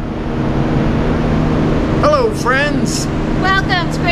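Loud, steady rushing background noise with a low hum under it, inside a glass-roofed indoor rainforest. Voices join about halfway through.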